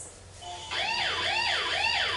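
A siren in a fast yelp, starting nearly a second in, each sweep rising and falling about twice a second.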